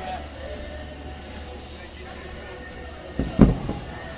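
Fireworks shells bursting: a quick cluster of loud booms about three seconds in, over a steady background rumble.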